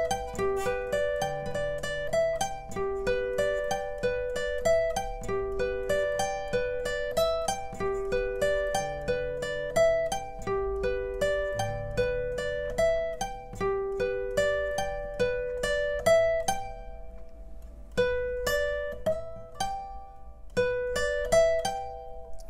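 Acoustic guitar played with a pick: single-note arpeggios picked string by string in a steady, repeating pattern through chord shapes, an alternate-picking speed exercise. The notes thin out briefly near the end, then pick up again.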